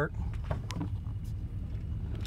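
1993 Chevy Silverado 1500 engine idling, a steady low rumble heard from inside the cab, with a few faint ticks.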